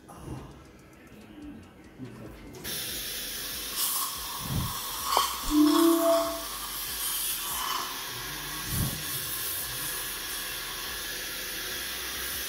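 Dental suction running as a steady hiss, switching on about two and a half seconds in, with a short louder sound near the middle.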